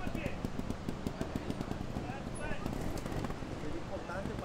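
Trials motorcycle engine running at low revs, a quick, even train of firing pulses, with faint voices in the background.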